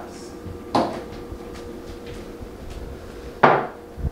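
Tableware being handled: a knock about a second in, then a louder clack near the end as a ceramic plate is set down on a wooden table. A steady faint hum runs underneath.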